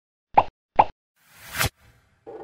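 Animated-intro sound effects: two quick cartoon plops about half a second apart, each dropping in pitch, then a short rising whoosh that cuts off suddenly.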